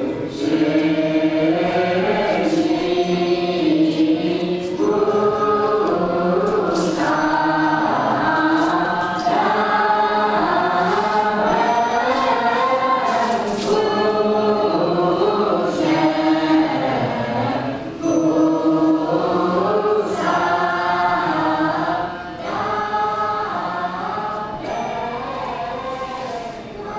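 Choir singing, several voices holding long notes that slowly shift in pitch.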